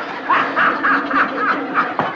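A person laughing: a quick run of about six short ha-ha pulses.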